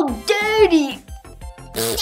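A girl's short wordless vocal sound over background music, with a brief noisy burst near the end.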